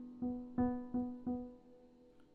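Piano playing an E minor seventh chord, struck about five times in quick succession. Each strike rings and fades, and the sound dies away toward the end.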